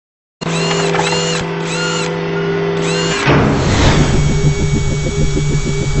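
Animated logo intro soundtrack: electronic music with drill-like whirring effects. It starts about half a second in with held tones and repeated sweeping chirps, and a pulsing beat sets in about three seconds in.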